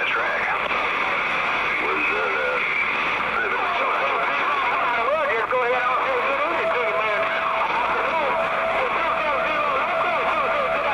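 CB base station radio receiving distant skip stations: faint, garbled voices overlap under steady static hiss, with a steady whistling tone joining them about four seconds in.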